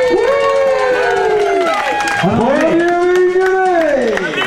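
A man's voice over a public-address system calling out in two long, drawn-out shouts, each rising and then falling in pitch.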